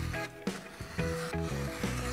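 A utility knife blade scraping as it is drawn through leather along a steel ruler, heard under background music.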